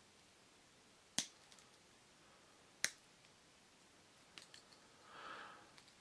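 Two sharp clicks about a second and a half apart, then a few faint ticks: the spring-loaded tools of a Victorinox Tinker Swiss Army knife snapping into place as they are worked.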